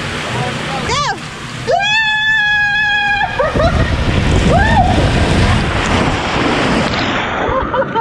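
A person sliding fast down an enclosed high-speed water body slide, water rushing and spraying around the body in the tube. There is a short whoop about a second in and a long held scream from about two to three seconds. After that the rushing water noise takes over, with a few short yelps, until the rider shoots out into the splash-down runout near the end.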